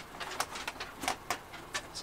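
Handling noise from a foam RC model warplane's fuselage: a few short clicks and rubs as it is gripped and turned over.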